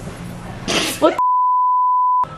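A steady, single-pitched censor bleep at about 1 kHz, covering a swear word, starts a little over a second in and cuts out all other sound. Before it come laughter and a girl's exclamation.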